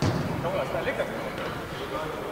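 A football kicked once at the start, followed by brief indistinct shouts from players, over the background noise of an indoor five-a-side game.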